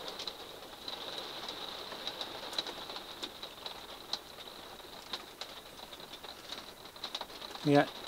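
Light hail and rain tapping on a motorhome's roof and roof skylight: scattered, irregular light ticks, with a faint steady high whine underneath.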